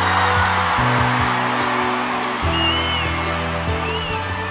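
Live band playing the slow intro of a pop ballad, with sustained keyboard chords over a bass line that shift about every second or two. A stadium crowd cheers and screams over it, loudest in the first second or two.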